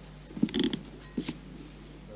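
A few sharp clicks and a short rattle of something small being handled, with a second click or two about a second later.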